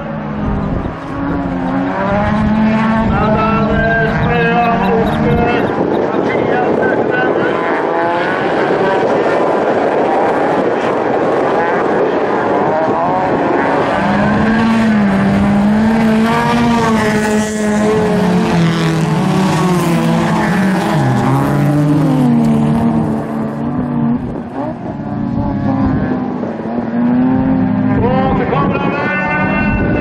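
Bilcross race car engine revving hard through corners. The pitch climbs and drops with the throttle and steps down at gear changes, and a denser rush of engine and tyre noise comes from about six to thirteen seconds in.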